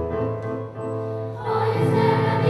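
Children's choir with instrumental accompaniment. Sustained accompaniment notes lead in, and the choir's voices enter about one and a half seconds in, singing together.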